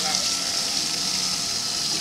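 Salon shampoo-bowl hand sprayer running: a steady hiss of water spraying onto a shaved scalp and splashing into the sink basin.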